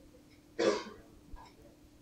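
A single short cough about half a second in, sudden and lasting about a third of a second, followed by a small click. A faint steady hum runs underneath.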